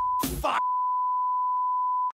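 Censor bleep: a steady beep tone cutting in and out over a man's swearing, then held alone for about a second and a half before stopping sharply.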